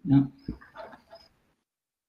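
A man says "yeah", followed about half a second later by a single dull knock and a brief faint high-pitched sound. The conference audio then drops to dead silence.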